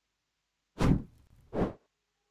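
Two whoosh sound effects, each brief and falling in pitch, about a second in and near the end, of the kind laid over a broadcast graphic or replay transition.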